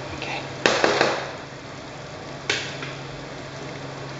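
Curry sauce bubbling in a frying pan on a gas burner as it comes to the boil, with a few sharp knocks, twice about a second in and once more halfway through.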